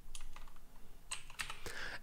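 Computer keyboard typing: a few separate keystrokes, most of them clustered in the second half.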